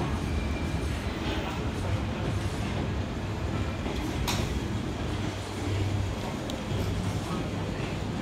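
Bakerloo line 1972 tube stock train pulling out and running along the platform, a steady low rumble. There is one sharp click about four seconds in.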